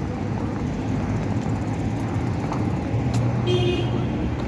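Street traffic noise: a steady low rumble from cars on the road, with a brief high tone near the end.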